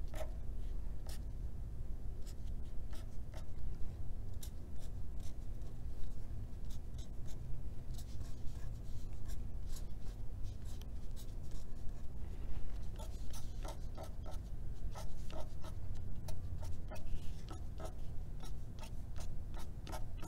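Marker pen drawing short dashes on paper: a string of quick, irregular taps and scratches, coming thicker in the second half, over a low steady hum.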